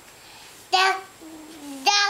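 A young child's voice with no clear words: a short high call about two-thirds of a second in, then a lower held tone, then another call starting near the end.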